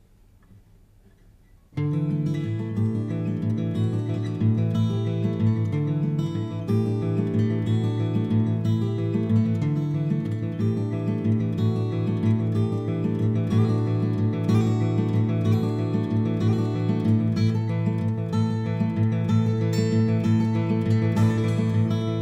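Steel-string acoustic guitar, capoed, fingerpicked in a steady pattern of ringing bass and treble notes, starting suddenly about two seconds in after a brief quiet.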